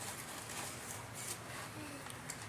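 Faint rustling and crinkling of a paper flour bag as it is pulled open and flour is scooped out with a measuring cup.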